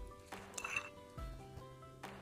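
A metal spoon clinks once on a glass baking dish about half a second in, with a short ring, over quiet background music.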